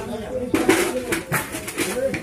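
A bird calling with low, steady, slightly wavering tones, heard against voices and a few short noisy sounds.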